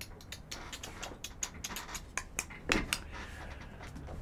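Computer keyboard typing: irregular sharp key clicks, several a second, thinning out in the last second. A brief vocal sound comes a little under three seconds in.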